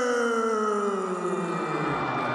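A ring announcer's voice drawing out the end of a fighter's name in one long call, its pitch falling steadily. Crowd noise builds beneath it as the call fades near the end.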